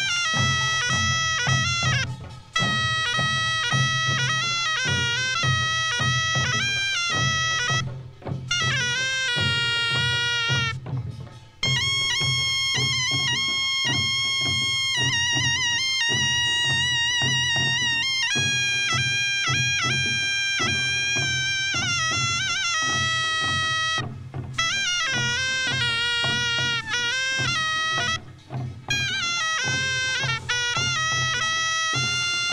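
Korean pungmul procession music: a reedy wind instrument, the taepyeongso shawm, plays a sustained melody in long phrases with short breaks between them, over steady beating of buk barrel drums and janggu hourglass drums.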